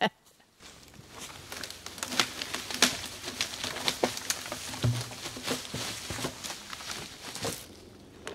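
Irregular crunching and rustling in dry fallen leaves on the forest floor.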